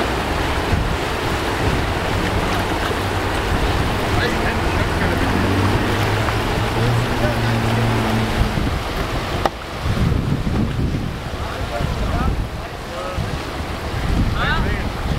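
Whitewater rushing steadily through a rocky slalom channel. In the last third, wind buffets the microphone.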